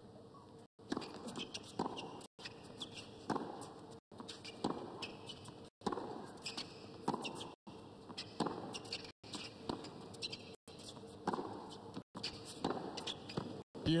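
Tennis rally on a hard court: a serve, then the ball struck back and forth by the players' rackets, a sharp hit about every second and a half. Crowd applause breaks out at the very end.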